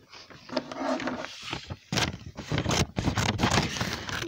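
Rustling, scraping and knocking of objects being handled close to the microphone: many short irregular clicks and scrapes.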